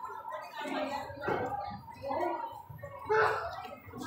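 Indistinct talking: a person's voice or voices that are not made out as words.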